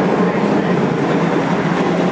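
Loud, steady street-traffic rumble with a low, even engine hum from heavy vehicles.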